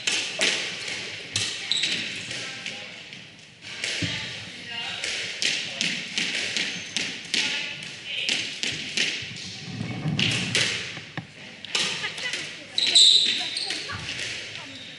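Squash rally: the ball being struck by rackets and hitting the court walls over and over as sharp knocks, with players' footsteps and sneakers squeaking on the wooden floor, one sharp squeak near the end.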